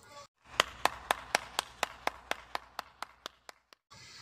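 A quick, even run of sharp clicks, about four a second, lasting about three seconds. The clicks are set between two brief spells of dead silence, like an inserted sound effect.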